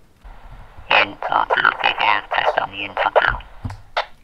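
Scrambled speech coming out of a PMR446 walkie-talkie's speaker: a radio without the scrambler feature is receiving a Retevis RT27 transmitting with its scrambler on. It is a garbled voice over radio hiss, with a narrow, tinny sound, and it is very, very difficult to understand.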